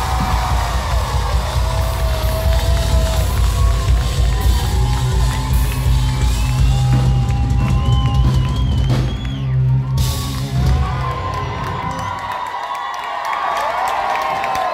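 Live post-hardcore band playing loud through the venue's sound system, heavy drums and bass driving, with the crowd whooping over it. The band stops about twelve seconds in, leaving the crowd cheering and whooping.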